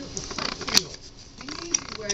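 Trading cards being handled and set down, light rustling with small clicks and one sharper click about three quarters of a second in.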